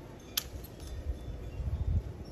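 Hand pruning shears snip once through a lemon stem about half a second in, a single sharp metallic click. A low rumbling handling noise builds toward the end as the cut fruit is pulled from the branch.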